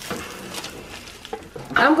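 A metal spatula scraping and clicking on a wire oven rack as it lifts a plastic-wrapped stromboli onto a plastic cutting board, a few faint scrapes and clicks. A voice starts near the end.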